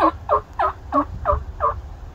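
Turkey calling: a loud series of short, downward-sliding notes, slowing to about three a second and stopping near the end.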